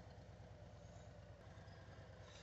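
Near silence, with only a faint, steady low hum.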